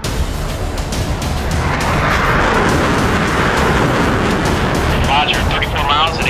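Jet aircraft engine noise, steady, swelling into a whoosh in the middle as if flying past, with background music underneath. A radio voice starts near the end.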